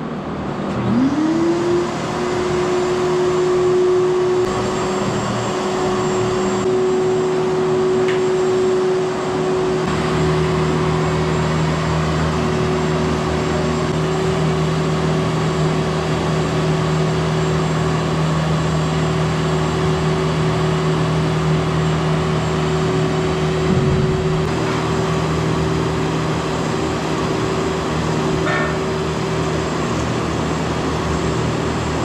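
Wet/dry shop vacuum motor spinning up about a second in, then running steadily as the hose sucks up dust from the steel floor. A lower steady hum joins about ten seconds in.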